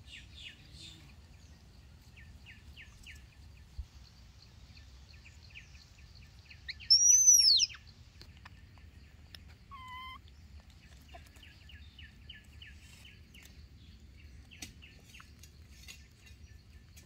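Birds calling: runs of quick, repeated chirps, with one loud whistle that rises and then falls about seven seconds in, and a short, lower call about three seconds later.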